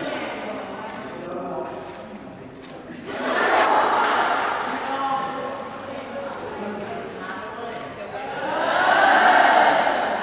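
Several people's voices talking and calling out, louder twice: about three seconds in and again near the end.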